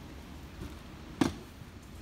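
A single sharp knock about a second in, as the removed convertible soft-top assembly is set down on the concrete floor, over a low steady background hum.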